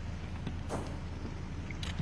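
Steady low hum of a vehicle, heard inside a car cabin, with a couple of faint brief rustles.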